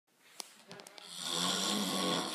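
A sleeping man snoring: one long, steady snore that swells in from about a second in, after a few faint clicks.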